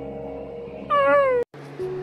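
A single loud meow about a second in: one cat cry that falls in pitch over about half a second and cuts off abruptly. Soft music with long held notes plays under it.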